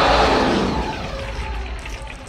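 Animated film soundtrack sound effect: a sudden loud rush of noise over a deep rumble, loudest at the start and fading away over about a second and a half.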